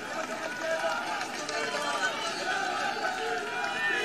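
A large crowd of many overlapping voices, calling out and talking at once, heard at a distance and well below the level of the speaker's amplified voice.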